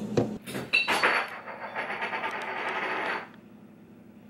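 A metal spoon clinking against a ceramic coffee mug a few times, followed by a couple of seconds of scraping that stops about three seconds in.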